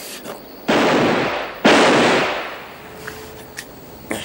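Two revolver shots about a second apart, the second louder, each ringing out with a long echo.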